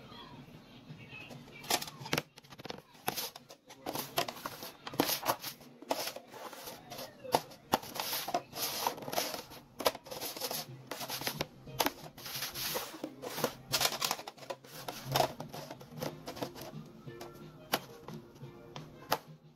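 Red plastic party cups clacking and sliding on a stone countertop in many quick, irregular clicks as they are shuffled in a cups-and-ball trick, over background music.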